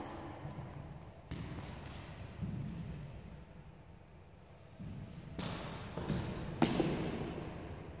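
Bare feet thudding on a wooden gym floor: a few scattered steps, then quicker heavier thuds of a run-up and landing for a side aerial, the loudest thud near the end.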